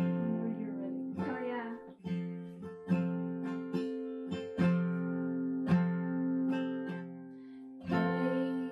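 Epiphone acoustic guitar, capoed, strummed in slow chords about once a second, each chord ringing on into the next.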